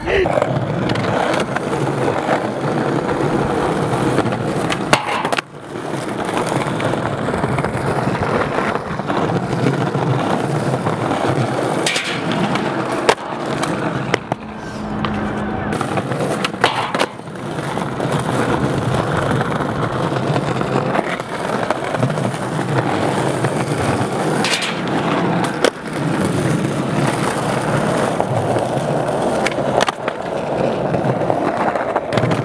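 Skateboard wheels rolling steadily over stone paving tiles, with several sharp clacks of the board hitting the ground.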